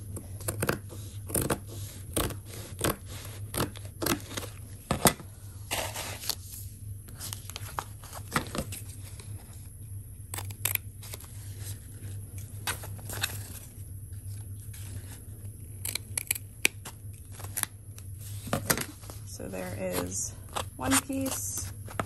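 Fiskars fabric scissors snipping through medium-to-heavy fusible interfacing: a run of short, sharp cuts at an uneven pace, with brief pauses between strokes.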